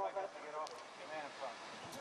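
Faint speech in a lull between louder commentary, over quiet outdoor background noise.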